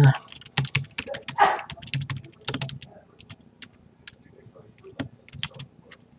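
Typing on a computer keyboard: a run of irregular key clicks, denser in the first half and sparser toward the end.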